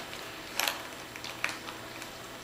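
A few light clicks and taps from a leather satchel's brass hardware being handled. The loudest comes about half a second in, with fainter ones about a second later.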